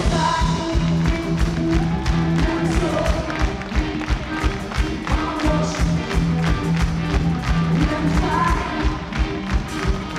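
Live pop-rock band playing with a steady drum beat, held bass and keyboard notes, and a lead vocal line, heard from within the audience.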